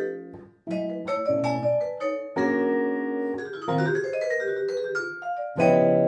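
Jazz vibraphone and electric guitar duo playing. Mallet-struck vibraphone notes ring over the guitar's comping. The sound breaks off briefly about half a second in, then the phrases resume, with a loud accented chord near the end.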